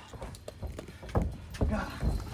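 Footsteps and thuds on a backyard wrestling ring's mat, with two heavier thumps a little past the middle.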